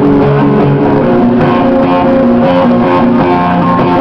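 Live rock band's guitar playing a picked pattern of notes, changing every fraction of a second, as the song's intro.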